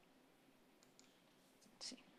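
Near silence: room tone with a few faint clicks and a brief hiss near the end.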